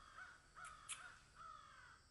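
Faint run of short, repeated bird calls, several a second, fading out near the end.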